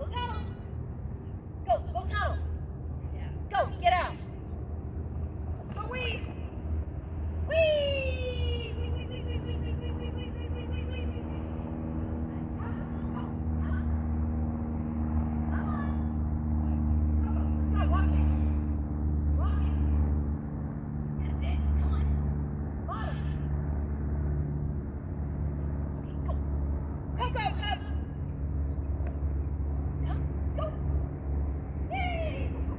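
A handler's short shouted calls to a dog running an agility course, scattered through the run over a steady low rumble.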